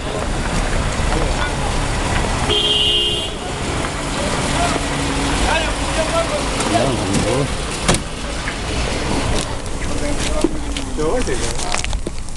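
A vehicle horn sounds once for just under a second, about two and a half seconds in, over steady engine and traffic noise with people's voices around.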